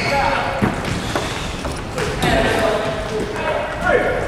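Futsal balls being kicked and trapped in a passing drill, with irregular thuds echoing in a large wooden-floored gym hall.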